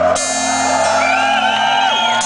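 Live rock band playing an instrumental passage between sung lines, led by a double-neck acoustic guitar, heard through an audience recording in a concert hall.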